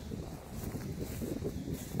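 Low, uneven rumble of wind buffeting the microphone outdoors.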